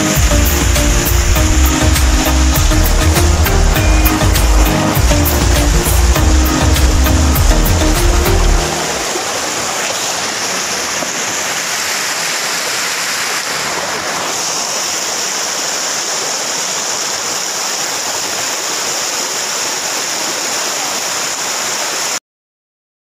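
Background music with a steady beat plays over rushing water for the first eight or nine seconds, then stops. After that only the steady rush of river water pouring over a concrete weir remains.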